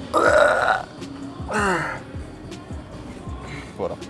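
A man's strained grunts of effort while forcing out a last heavy curl rep: a loud, rough grunt at the start, then a second groan falling in pitch about a second and a half in.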